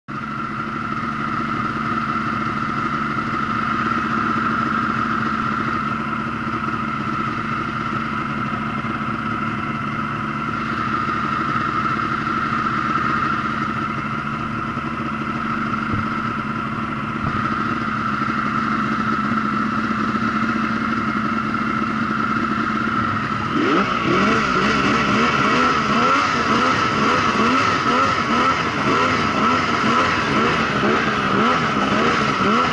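Yamaha snowmobile engine running steadily under a rider. About 23 seconds in it revs higher and then swells up and down repeatedly as the throttle is worked.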